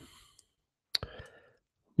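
A single sharp mouth click about a second in, followed by a short soft intake of breath, picked up close on a studio microphone.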